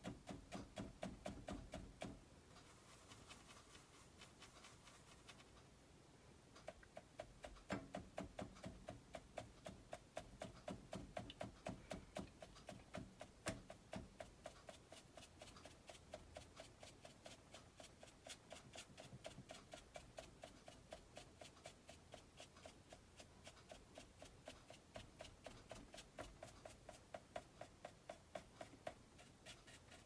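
Faint, rapid soft tapping of a dry mop brush stippling acrylic paint onto a canvas panel, several light taps a second. The tapping thins out for a few seconds after about two seconds, then carries on steadily.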